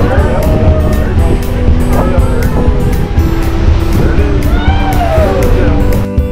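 Loud, steady low rumble on the deck of a moving ferry, with voices calling out and background music underneath.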